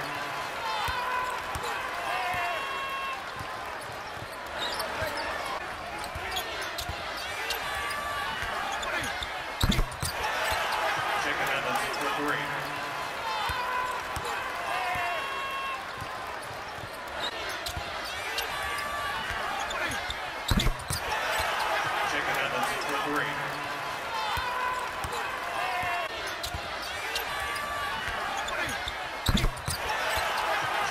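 Indoor basketball game sound: crowd chatter and court noise, with a sharp thump three times, about eleven seconds apart.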